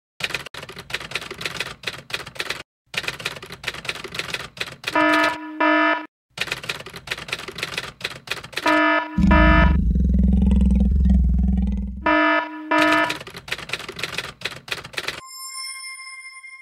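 Typewriter keys clacking in quick runs, broken three times by a pair of short buzzer beeps, with a loud low rumble lasting about three seconds in the middle. Near the end the typing stops and a single bell ding rings on and fades.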